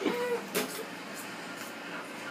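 A few crisp crunches of a mouthful of raw onion being chewed. The first crunch, about half a second in, is the loudest, and fainter ones follow over low room noise.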